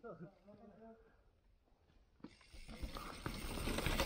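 Mountain bike coming down a rocky dirt trail toward the microphone: tyre noise and small rattling clicks start about halfway through and grow louder as it nears.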